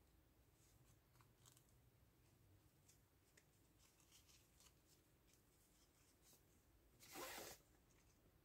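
Near silence with faint, scattered rustles and small clicks as fingers handle and shape a grosgrain ribbon bow, then one brief, louder scraping rustle near the end.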